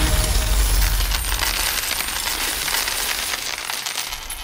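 A large heap of coins poured out onto a counter, a continuous jingling clatter of many coins, with a low thud at the start.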